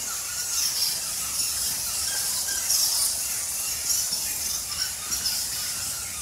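A colony of cave bats squeaking and chittering, a continuous high-pitched twittering that flickers in level.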